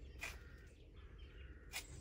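Quiet outdoor ambience with faint bird chirps over a low steady rumble, broken by two short soft rushes of noise, about a quarter second in and near the end.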